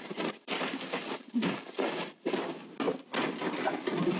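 A large plastic bag rustling and scraping as it is pushed down into a plastic recycling bin, in short irregular spells of crinkling with brief pauses between them.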